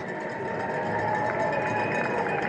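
Steady outdoor background noise with a vehicle engine running under it, at a level pitch with no clear change.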